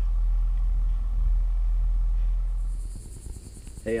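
Steady low wind rumble on the microphone, which stops with a cut about three seconds in. A high, steady pulsing insect trill comes up just before the cut and carries on.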